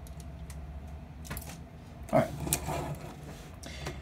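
A plastic Machine Robo Mugenbine combining robot figure being handled and moved across a tabletop by hand: a few faint, scattered clicks and light knocks, over a low steady hum.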